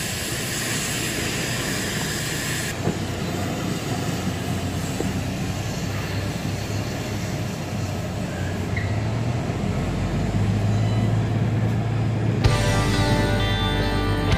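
Truck cab noise while driving slowly: a steady engine hum with road and wind noise, the low engine note growing a little louder past the middle. Background music with guitar comes in near the end.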